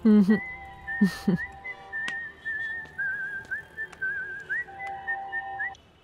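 A tune whistled in a high, wavering tone with quick upward flicks between notes; it stops suddenly shortly before the end.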